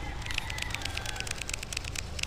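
Baitcasting reel, a Daiwa Tatula, being cranked on the retrieve: a rapid, irregular run of sharp clicks over a low rumble.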